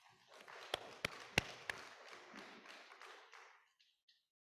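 Paper rustling as sheets are handled and shuffled close to a microphone, with four sharp taps in the first two seconds.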